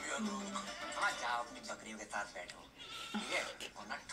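Hindi film-trailer dialogue with background music, played back at moderate level.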